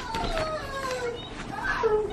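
Young children playing in the background, one child's voice giving a long call that falls slowly in pitch, with a short call near the end. The paper pages of a sale flyer rustle as they are turned.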